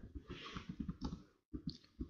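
Computer keyboard being typed on: a quick run of faint, irregular key clicks as a short command is entered.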